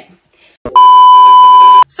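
Loud electronic bleep tone edited into the soundtrack at a cut: one flat, steady beep lasting about a second, starting with a click just over half a second in and cutting off sharply.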